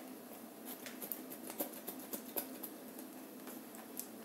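Faint, scattered small clicks and taps from a paper carton of cream being squeezed and handled over a plastic bowl, in a quiet room.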